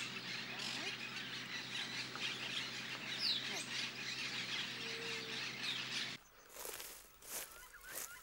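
Natural forest ambience: a steady high hiss with many short bird chirps and a few quick chirping glides. About six seconds in it cuts abruptly to quieter open-air ambience with a few faint knocks.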